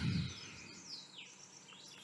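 Faint bird chirps in the background, a few calls gliding downward in pitch, over a low, steady background hiss.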